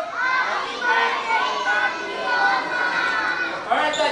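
Children talking and calling out over one another, several young voices overlapping at once.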